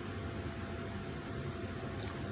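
Room tone: a steady low hum under a soft, even hiss.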